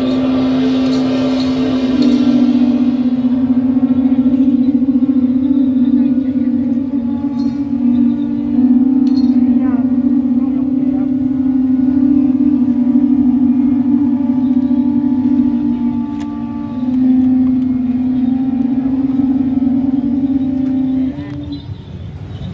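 Shaojiao, the long brass processional horns of a Taiwanese temple procession, blown together in one long, steady low drone that shifts slightly in pitch and breaks off near the end.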